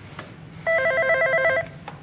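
Desk telephone's electronic ringer sounding one ring about a second long: a fast warbling trill of alternating tones.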